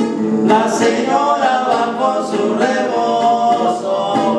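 Two men singing a Mexican corrido as a duet over two strummed acoustic guitars; the voices come in about half a second in, after a few guitar strums.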